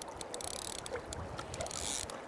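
Fly reel's click-and-pawl ratchet ticking irregularly as the spool turns while a hooked trout is being played, over a steady rush of river water.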